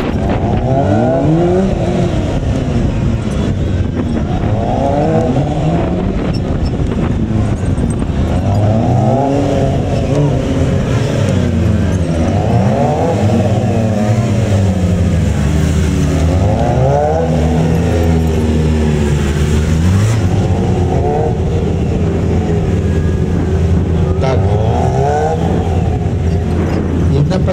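Sport motorcycle engine revving up and dropping back over and over, about every three to four seconds, as the rider accelerates out of each cone turn and shuts off into the next.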